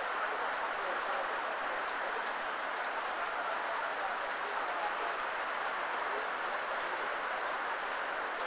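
Steady rain falling, an even hiss with scattered ticks of single drops.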